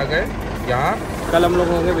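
A man's voice speaking, over a steady low engine rumble from nearby buses.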